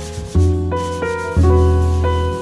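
Jazz piano trio playing: acoustic piano chords and melody over double bass notes about once a second, with brushes swishing on the drums.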